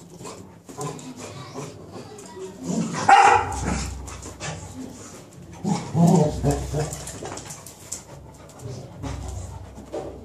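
A beagle and a cocker spaniel play fighting, with a loud bark about three seconds in and another burst of barking and snarling around six seconds. Between them come softer scuffling noises.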